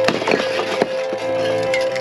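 Background music with a steady held tone. In the first second, aerosol spray cans clatter and knock together as one is pulled from the rack.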